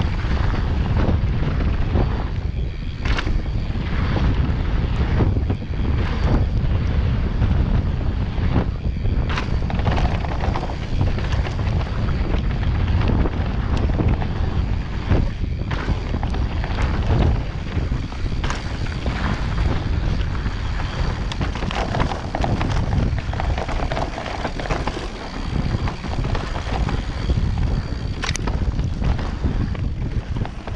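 Wind buffeting the camera microphone on a fast mountain bike descent, with tyres rolling over a loose dirt trail. Frequent sharp knocks and rattles come from the bike over bumps.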